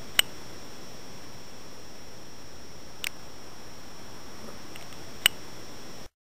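Steady hiss of a camera microphone with a faint high whine, broken by three sharp clicks a few seconds apart, the first and last loudest.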